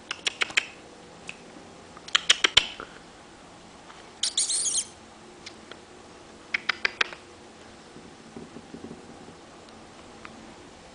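Quick clusters of sharp clicks and taps on a hardwood floor, four or five at a time, recurring three times, with a brief high rattle about four seconds in.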